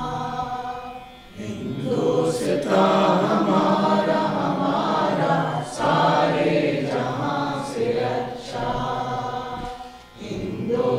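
Slow singing in long held phrases. The song breaks briefly about a second in, again near six seconds, and just before the end.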